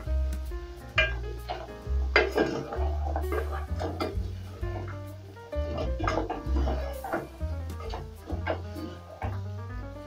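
Background music with held bass notes, over a wooden spoon stirring beef and onions in a metal cooking pot, knocking and scraping against its sides and bottom.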